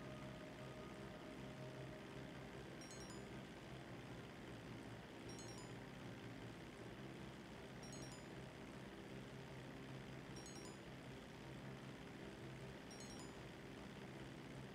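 Near silence: a faint, steady background hum, with a short, faint high chirp about every two and a half seconds.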